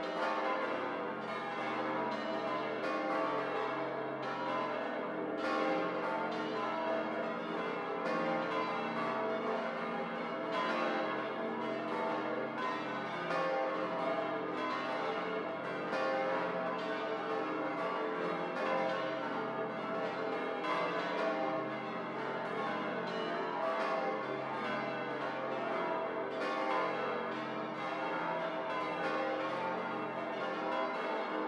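The church bells of Munich's Frauenkirche ringing together in a full peal, with many overlapping strikes and a steady swell of ringing tones. The peal is rung ahead of the requiem Mass.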